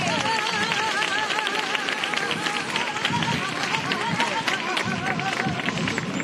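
A saeta sung unaccompanied: a single voice holding a long, wavering flamenco melisma with strong vibrato.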